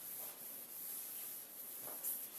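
Blackboard duster wiping chalk writing off a chalkboard: a run of scratchy rubbing strokes with brief gaps between them, the last swipe the loudest.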